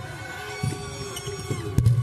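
Basketball arena crowd noise during a free throw, with held pitched sounds running through it. A single sharp knock comes near the end.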